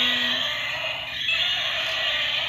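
Several battery-operated walking toy dinosaurs running together, making a steady, buzzy electronic noise.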